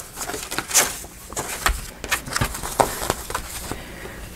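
Folded sheets of printed paper being handled: a sheet pulled from a stack and slipped into another, heard as a string of short paper rustles and light taps.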